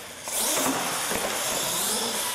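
Radio-controlled monster truck driving hard across a concrete floor: its motor and tyres get sharply louder about a third of a second in and stay loud.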